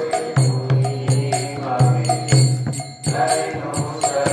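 A man's deep voice chanting a devotional song in long held notes, with small brass hand cymbals (kartals) struck in a steady rhythm of about three beats a second.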